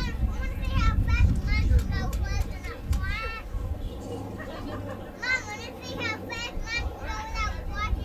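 Children's high-pitched voices chattering and calling out in a crowd, over a low rumble that is loudest in the first three seconds.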